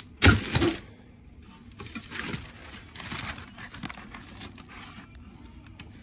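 Packing paper and plastic wrap rustling and crinkling in a cardboard box as plastic-wrapped stand legs are lifted out, with a loud bump and crinkle about a quarter second in.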